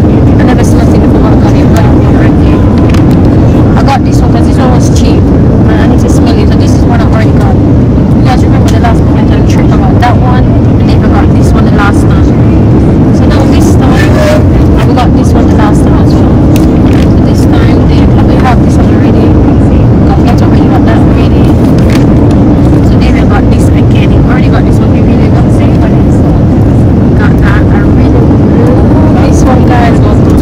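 Steady low rumble of an airliner cabin in flight, engine and airflow noise at an even level throughout, with indistinct voices faintly underneath.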